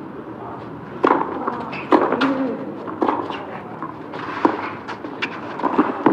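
Tennis rally on a clay court: a sharp crack of racket on ball roughly once a second, with a few softer bounces between the hits, over a hushed crowd.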